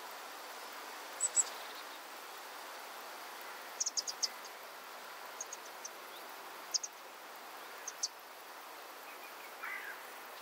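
Hummingbirds giving short, very high chip notes in scattered little clusters, over a steady background hum of insects.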